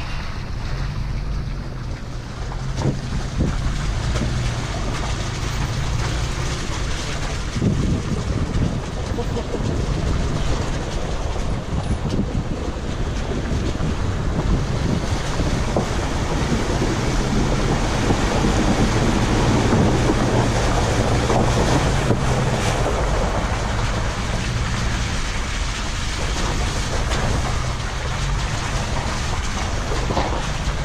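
Car driving over a muddy, waterlogged dirt road, its tyres splashing and churning through puddles, under wind buffeting the outside-mounted microphone with a steady low rumble.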